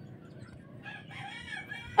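A rooster crowing faintly, one drawn-out call starting about a second in, over a low steady background hiss.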